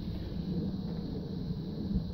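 A steady low rumble with a faint hum under it.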